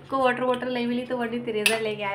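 A woman's voice drawn out in long held vowels at a fairly steady pitch, with a short sharp click near the end.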